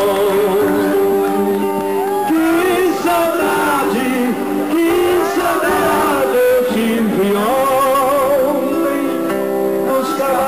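Live band music: male voices singing over guitar, played loud through the stage sound system.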